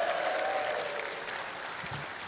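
Studio audience applauding, the applause slowly dying away.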